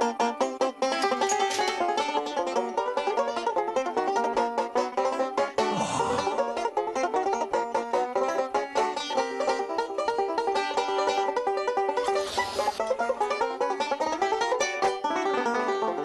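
Banjo picked fast in bluegrass style, a rapid unbroken run of plucked notes. Two brief swells of noise break in, about six seconds in and again near the end.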